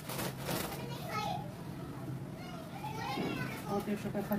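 Children talking and playing, their voices heard in the background.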